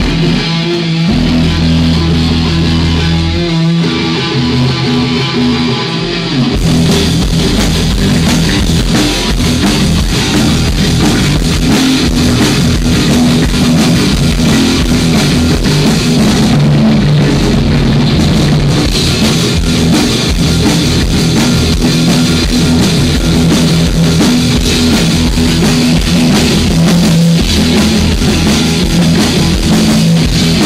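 Live rock band playing: electric guitar and drum kit. The sound fills out with cymbals about six seconds in.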